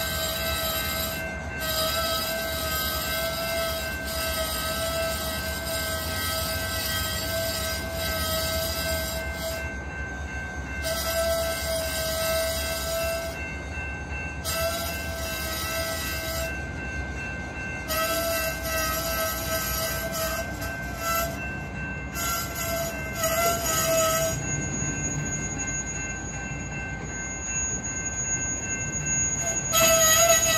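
Canadian Pacific continuous-rail train cars rolling slowly past with a low rumble, while steel wheels give a high steady squeal that starts and stops every few seconds and fades out near the end.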